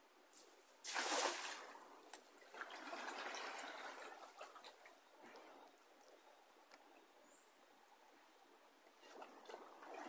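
A cast net is thrown into the river and lands with a splash about a second in. A couple of seconds of water splashing and sloshing around the wading fisherman follow, then only a faint trickle of water.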